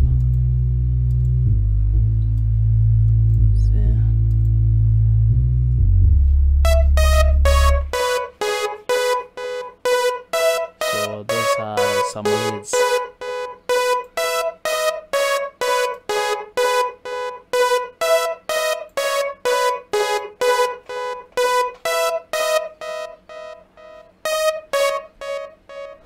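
Software synthesizer playback in FL Studio. A loud, low sustained synth chord holds for about eight seconds. Then a Purity synth lead patch plays short, evenly repeated staccato notes, about two a second, which get quieter near the end.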